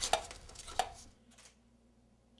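Three short sharp knocks or taps in the first second, then near silence with a faint low hum.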